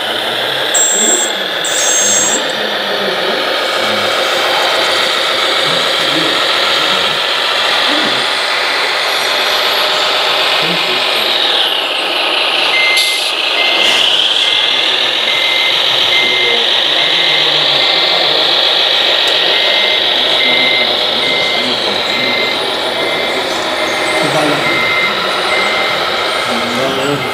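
RC forklift running with a steady whine that dips in pitch and rises again about halfway through. Just then an electronic reversing beeper starts, pulsing about twice a second as the forklift backs up.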